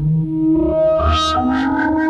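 Synton Fenix 2 analog modular synthesizer playing sustained notes through its phaser in feedback mode and its delay. Bright sweeps move through the upper tones about halfway through.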